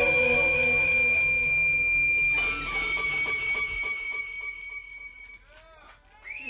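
A live rock band, guitar-led, holding a final note over a moving bass line. The music breaks off about two seconds in, leaving a high held tone that fades away over the next few seconds.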